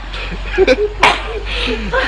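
Voices with bits of laughter, broken by two sharp knocks about a second in.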